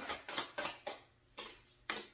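Tarot cards being handled and laid on a table: a quick run of light card snaps and taps in the first second, then two more single taps.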